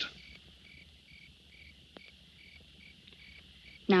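A cricket chirping in an even rhythm, about two chirps a second, with a single faint click about two seconds in.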